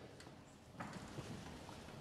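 Faint room noise with a few soft clicks and knocks starting about a second in.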